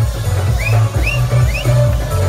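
Loud electronic dance music with a heavy, pulsing bass beat. Three short rising slides in a high pitch come about every half second.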